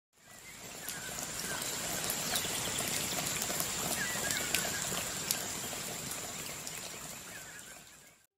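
Outdoor nature ambience under trees: a steady rushing hiss, a thin high steady tone, and a few short chirps with scattered light ticks. It fades in and out.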